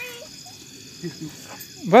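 Faint background voices, then near the end a loud voice call rising steeply in pitch.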